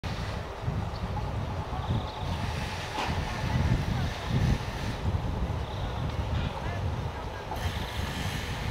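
Outdoor ambience dominated by wind buffeting the microphone, an irregular gusty low rumble.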